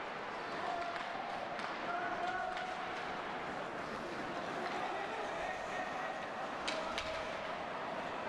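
Ice hockey rink ambience during play: a steady murmur of crowd voices in the arena, with a few sharp knocks of sticks and puck on the ice.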